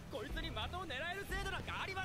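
Speech only: a character's voice from the anime speaking a line of dialogue in Japanese.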